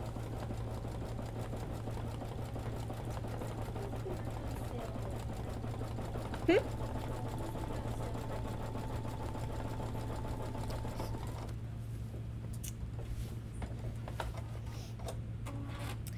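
Home embroidery machine stitching out a fringe design, its needle running at a fast, steady pace under a low hum. A brief rising squeak comes about six and a half seconds in.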